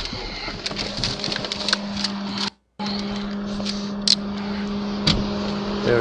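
Police body-camera recording played back: a steady low hum with irregular clicks and rustling from the camera being handled as the officer moves. The audio cuts out completely for a moment about two and a half seconds in.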